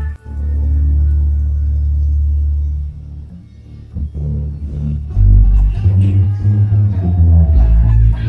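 Isolated electric bass guitar track. One long held low note, a quieter stretch about three to four seconds in, then a run of short plucked low notes.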